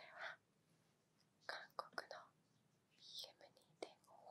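A woman whispering quietly in short phrases, with a few sharp clicks among them.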